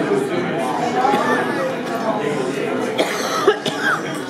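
Indistinct chatter of many voices filling a room, with a sharp cough near the end.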